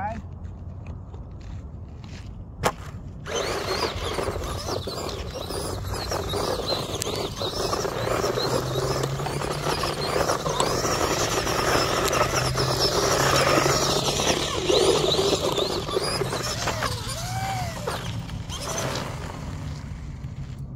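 1/18-scale LaTrax Teton electric RC monster truck driving hard over loose dirt on only two wheels: motor whine rising and falling with the throttle over the crunch and scrabble of dirt and gravel. A sharp click about three seconds in, then the running noise builds and dies away just before the end.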